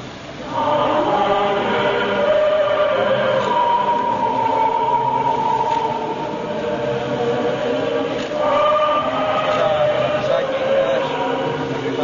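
Orthodox memorial chant sung by voices in long held notes, starting about half a second in, with a new phrase about two-thirds of the way through.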